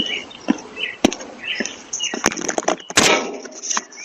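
A doorbell camera being grabbed and tampered with, close on its own microphone: a run of sharp knocks and clatters, then a loud scraping rasp about three seconds in.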